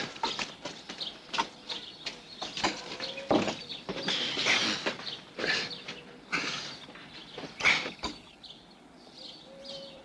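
Irregular knocks, bumps and scrapes, with footsteps, as an old enamelled wood-burning kitchen stove is carried by hand, quieter near the end.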